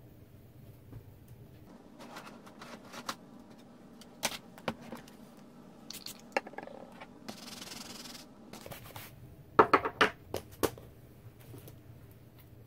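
A clear-mounted rubber stamp on an acrylic block being scrubbed clean on a two-pad stamp scrubber: light scratching and rubbing with scattered small clicks, a short hiss midway, and a cluster of louder plastic clacks near the end as the scrubber case is handled.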